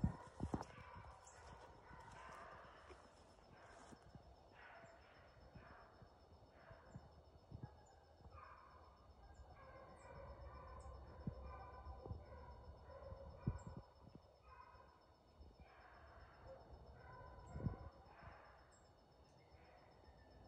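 Beagles baying in the distance, faint, in short broken bursts as the pack runs a freshly jumped rabbit that it has not yet got tight on. A few soft thumps come near the microphone, and a faint steady high tone sits behind it all.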